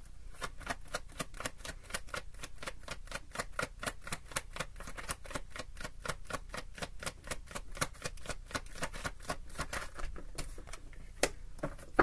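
A deck of tarot cards being shuffled by hand: a quick, continuous run of crisp card clicks, about six a second, with one sharper snap near the end.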